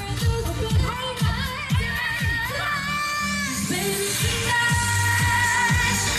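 Live pop music over an outdoor PA: female vocals over a dance beat with a kick drum about twice a second. Midway the beat drops out for about a second under a rising synth sweep, then comes back in.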